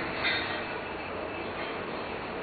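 Steady background hiss from the recording, with one brief short sound about a quarter second in.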